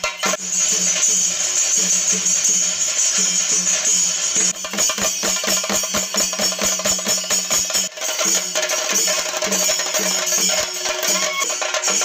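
Chenda drums beaten with sticks in fast, dense, driving strokes, the ritual drumming that accompanies a Theyyam (thira) dance, with bright metallic ringing above the drums.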